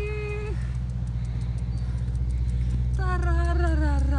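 A woman's long, wavering vocal tone, a drawn-out moan or hum, ends about half a second in and another begins about three seconds in. Under both runs a steady low rumble.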